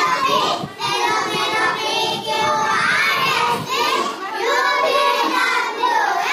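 Young children reciting a rhyme together in a sing-song chant, their voices in unison, with short breaks between lines.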